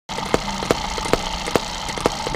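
Eachine EM2 miniature hit-and-miss engine running: a sharp firing pop about two and a half times a second, with fainter mechanical clicks between the pops.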